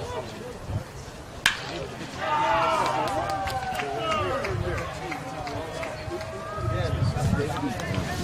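A bat strikes a pitched baseball with one sharp crack about a second and a half in. Several voices then shout and cheer together.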